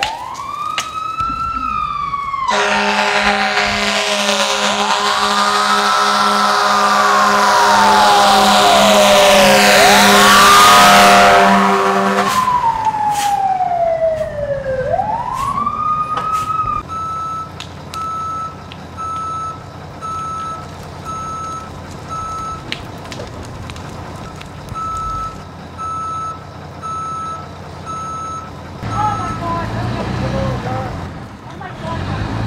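Fire engine sirens wailing, several rising and falling glides overlapping. A deep air horn blasts steadily over them for about ten seconds. After the sirens die away, a reversing alarm beeps about once a second, with a short break partway through.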